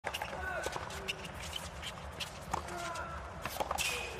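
Tennis rally on a hard court: a series of sharp knocks from racket strikes, ball bounces and footwork, with short squeaks from shoes on the court, over the low hum and murmur of the stadium.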